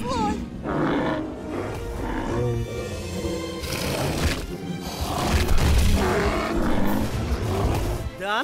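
Dinosaur roars and growls used as film sound effects, over background film music, loudest in the second half.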